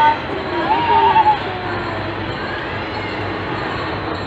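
A person's high, wavering voice, held for about half a second around a second in, over a steady background hum.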